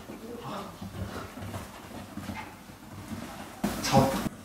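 Two Maltese dogs playing and scuffling on a leather sofa, with faint dog sounds. Near the end there is a brief loud rush of noise as one dog is grabbed.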